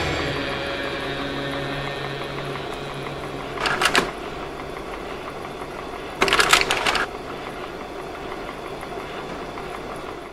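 Devotional kirtan music fading out, then a slide projector running with a steady mechanical whirr, clattering twice as slides change, briefly at about four seconds in and again for about a second a little after six seconds.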